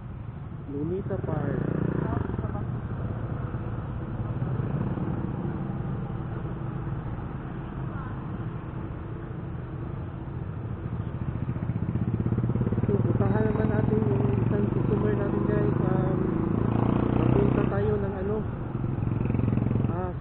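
Yamaha motor scooter riding slowly through town traffic: its engine running with road and wind noise on the mic, getting louder about twelve seconds in, with a person's voice heard at times over it.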